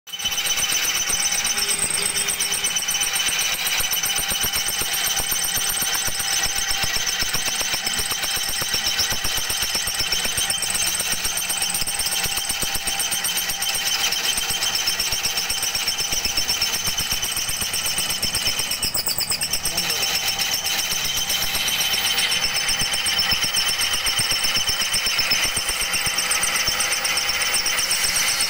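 A machine running steadily and loudly, a fast even rattle with a constant high whine over it.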